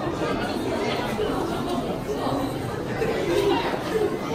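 Indistinct chatter of several people's voices, a steady background babble with no clear words.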